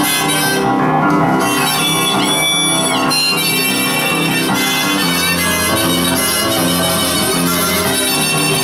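Blues harmonica played over upright piano accompaniment, with a note bent up and back down about two to three seconds in.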